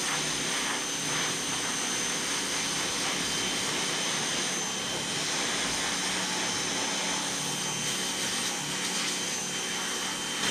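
Black Max pressure washer running steadily while its spray wand blasts water across the roof of a motorhome, a continuous hiss with a steady high whine.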